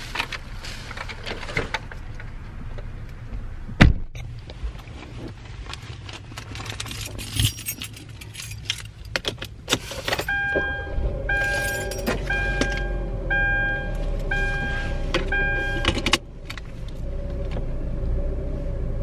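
Rustling and clicks of bags and keys, with one sharp knock about four seconds in like a car door shutting. About ten seconds in a car engine starts and runs at idle while a two-tone warning chime beeps about once a second, six times.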